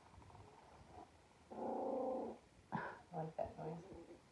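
A young Border Collie puppy growling for under a second, followed by a few shorter, broken vocal sounds.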